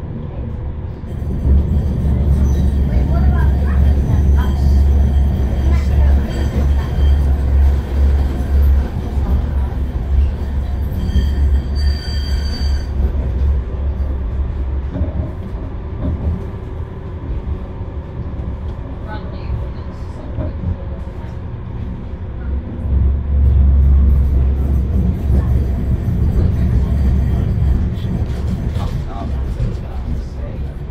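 Bombardier M5000 tram running on rails, heard from inside the driver's cab: a loud low rumble that swells for the first dozen seconds, eases off, then swells again a little after twenty seconds in, with brief thin high tones around twelve seconds in.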